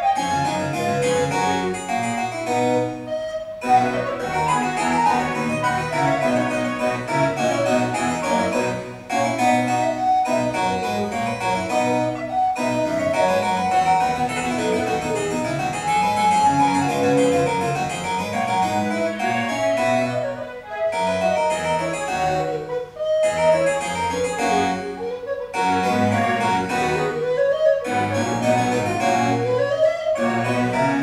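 Alto recorder playing a melody over a harpsichord accompaniment, in phrases with short breaths between them.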